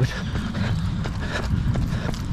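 Jogging footsteps on a paved path, about two to three steps a second, over a steady low rumble.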